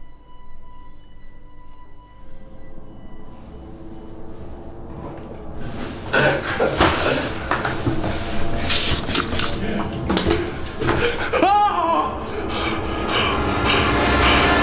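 A steady high-pitched ringing tone, fading out after about three seconds, used as a tinnitus-like sound effect for a stunned character. From about five seconds in comes a louder, busy passage of mixed clattering and noise, with a brief swooping sound a little before the end.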